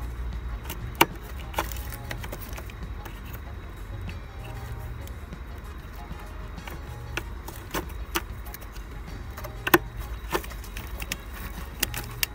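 Sharp plastic clicks and snaps of wiring-harness connector latches being released and the plugs pulled off an engine control unit, several separate clicks with the loudest about ten seconds in, over a steady low hum.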